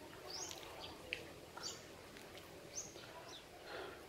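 A bird calling with short, high chirps repeated every second or so, faint against quiet outdoor background noise.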